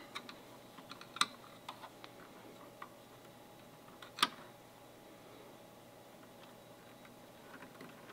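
Faint clicks and taps of a small flathead screwdriver working U.FL antenna connectors off a gateway circuit board. The two sharpest clicks come about a second in and just after four seconds in.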